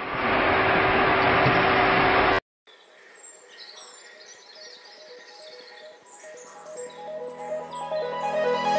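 Steady roar of an airliner cabin in flight, with a constant hum, cutting off abruptly about two and a half seconds in. Soft electronic background music then fades in and builds toward the end.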